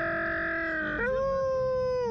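A slingshot ride passenger screaming in two long held notes: the first sags slightly in pitch, and about a second in a second, higher note takes over and holds until it breaks off at the end.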